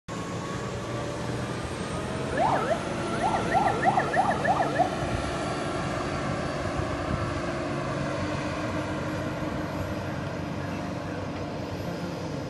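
Jet-propelled FRP speedboat running past at speed: a steady engine drone with the rush of water from its wake. About two and a half seconds in, a quick run of short whistled chirps sounds for about two seconds.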